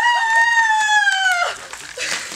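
A woman's long, high-pitched scream as a bucket of ice water is poured over her head, rising at the start, held for about a second and a half, then dropping away, with water splashing faintly underneath.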